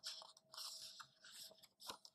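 A picture book's paper page being turned by hand: faint rustling and crinkling in several bursts, with a sharp tap near the end as the page settles.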